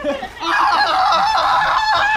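A young man's loud, high-pitched, wavering laughter, starting about half a second in.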